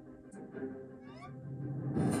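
Faint soundtrack of the cartoon episode under the reaction: a low steady hum, with a brief high, gliding, meow-like call about a second in.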